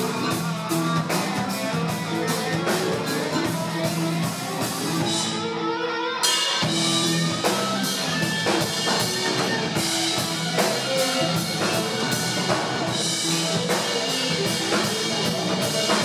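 Live rock band playing an instrumental passage on electric guitars, bass and drum kit, with a steady beat. There is a brief break about five seconds in, and the full band comes back in just after six seconds.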